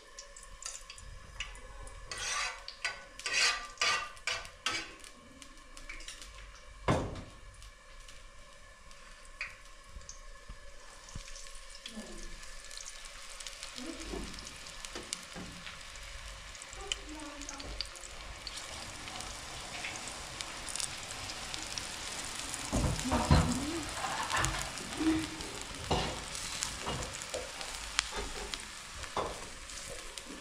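A metal spoon clicks and scrapes against a metal bowl of beaten egg for the first few seconds. From about a third of the way in, hot oil in a frying pan sizzles steadily as egg-coated slices are laid into it, with occasional utensil knocks.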